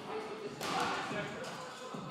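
Faint voices in a gym, with a single soft thud about half a second in.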